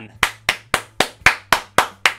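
One person clapping their hands quickly: seven sharp claps, about four a second.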